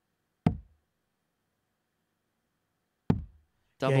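Two steel-tip darts striking a Winmau bristle dartboard, each a sharp thud, about two and a half seconds apart.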